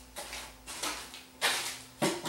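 Wooden cabinet cover of a cassette deck being handled and set aside, a few short scrapes and knocks, the loudest about a second and a half in.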